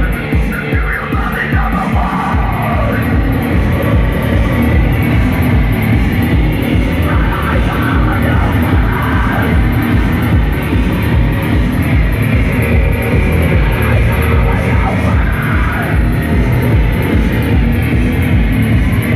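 A loud live rock band: distorted electric guitar and keyboards over a steady pounding beat, playing continuously without a break.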